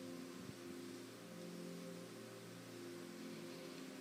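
Faint background music: soft held chords of several steady tones, shifting gently.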